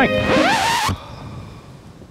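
A short whoosh transition effect with a gliding tone in it, lasting just under a second as the background music ends, then faint steady background hiss.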